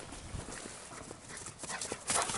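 A dog running fast across grass, its paws thudding in a quick, irregular patter over a steady hiss.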